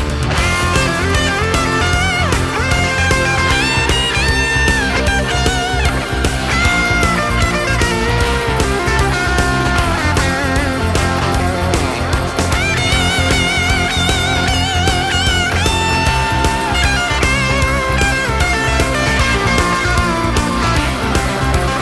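Rock band's instrumental break: a lead electric guitar plays held, wavering and sliding notes over a steady bass and drum backing, with no vocals.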